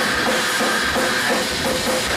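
Hardcore metal band playing loudly: a drum kit beating steadily under a dense wall of guitars.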